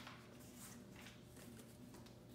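Near silence: quiet room tone with faint rustling as a fabric item is handled.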